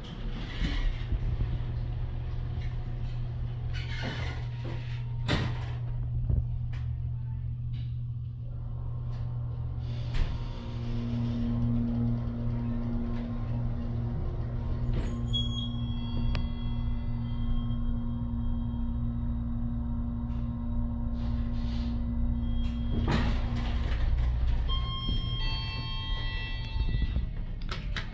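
Ride in a KONE-modernized 1974 Westinghouse hydraulic passenger elevator: a steady low hum runs throughout, a steady whine joins about ten seconds in, and there is door noise about four seconds in and again a little before the end. Clusters of high electronic beeps and chime tones sound about halfway through and again near the end.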